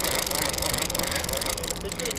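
Shimano TLD 25 lever-drag fishing reel giving a fast, even run of clicks under the load of a hooked fish.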